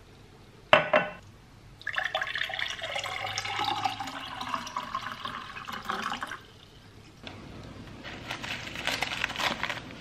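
A drinking glass set down on a stone countertop with one sharp knock, then water poured into the glass for about four and a half seconds as it fills. Near the end, a paper food wrapper crinkles as it is unwrapped.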